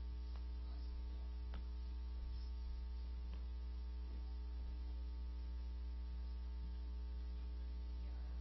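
Steady electrical mains hum with a ladder of higher hum tones from the sound system's audio feed, with a couple of faint knocks.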